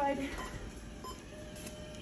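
A voice trails off at the start, then faint metallic clinks of the heavy embedded chain and a steel instrument being worked against it. A faint steady tone sounds in the second half.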